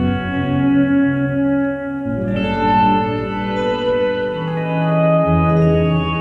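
Electric guitar and Chapman Stick playing together: long held, layered guitar notes over low Stick bass notes, the harmony shifting about two seconds in and a new bass note entering about five seconds in.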